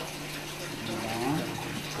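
Soft, low talk from a few people, over a steady low hum and a rushing hiss.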